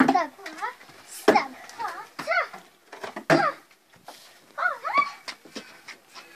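Children's voices: short, high shouts and calls with no clear words, with a couple of sharp knocks about a second in and three seconds in.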